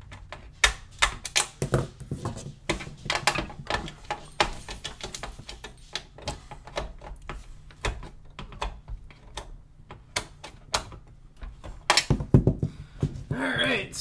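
Irregular clicks, taps and clatter of hands working inside an open desktop PC case, re-seating the graphics card in its slot and handling the cables.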